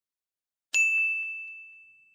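A single bright chime, an end-card sound effect, strikes about three-quarters of a second in and rings on one high clear note, fading away over about a second and a half. Two faint light taps follow shortly after the strike.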